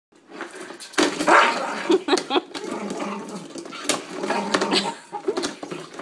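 Jack Russell terrier making agitated barks and whines at a spin mop bucket, in repeated bursts. Sharp clicks and knocks of plastic come through between them as it noses into the spinner basket.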